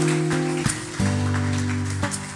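Background music: a slow ballad intro of acoustic guitar chords, each held and changing about every half second to a second.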